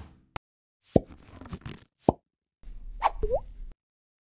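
Animated logo intro sound effects: a run of sharp pops and clicks, then a short noisy swell with a quick upward-sliding tone about three seconds in.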